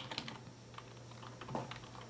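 Computer keyboard keys being typed: a quick run of faint keystrokes at the start, then a few scattered clicks, over a low steady hum.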